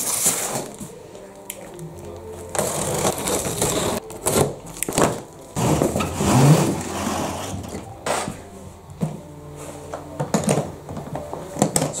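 A cardboard shipping box being slit open and unpacked: stretches of scraping and rustling cardboard as the box is cut and opened and a molded hard guitar case is slid out, with several sharp knocks as the case is handled and set down.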